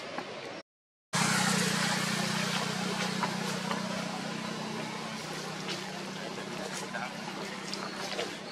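Outdoor ambience cut by a moment of dead silence just under a second in, then a steady low motor hum, like an engine running, that slowly fades, with scattered small clicks and rustles.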